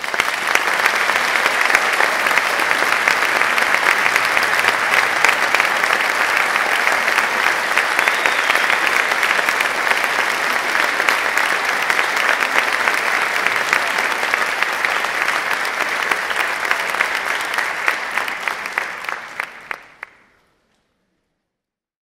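Audience applauding, a steady dense patter of many hands clapping that dies away after about eighteen seconds and stops.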